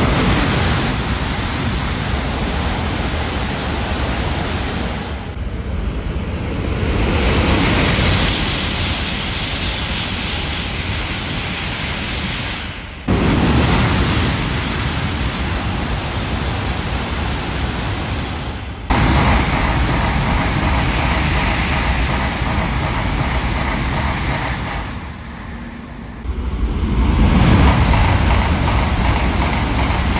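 Shinkansen bullet trains passing at high speed, one after another: a loud, steady rush of air and wheel-on-rail noise. The sound changes abruptly about 13 and 19 seconds in, dips briefly near 26 seconds, then swells again as another train goes by.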